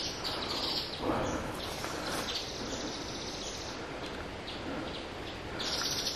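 Forest ambience: small birds chirping in the trees over a steady high-pitched background hiss.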